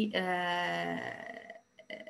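A woman's drawn-out hesitation sound, a held 'uhh' at one steady pitch for about a second and a half, fading out.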